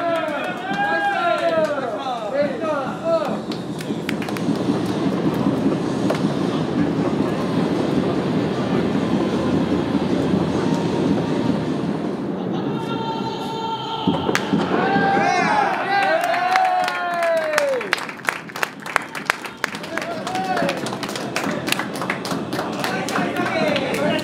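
A group of baseball players shouting and cheering together in a dugout, with a dense wash of voices and stadium noise through the middle. Near the end comes a quick run of sharp hand slaps or claps as they high-five, then more shouting.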